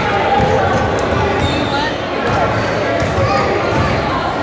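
Basketballs bouncing on a hardwood gym floor as players dribble and shoot, with many overlapping voices in a large gym.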